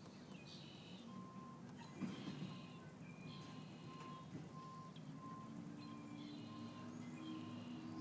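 Faint outdoor ambience: a thin electronic beep repeating about twice a second, with short high chirps now and then and a low hum that rises slightly near the end.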